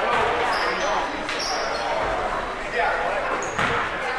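Voices and laughter echoing around a gym, with short, high sneaker squeaks from players on the hardwood court.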